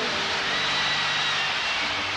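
Mothership landing effect: a steady, jet-like rushing noise with a faint high whine held through it.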